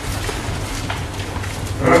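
A pause between a man's spoken phrases, filled by a steady low hum and room noise. His voice comes back near the end.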